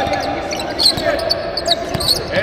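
A basketball bouncing on the court during live play, a few sharp thuds about a second apart, echoing in a large arena, with players' and spectators' voices underneath.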